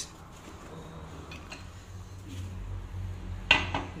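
Metal parts of a car shock absorber being handled with tools: soft metallic clinks, then one sharper metallic clank about three and a half seconds in, as the shock is set up for gas filling.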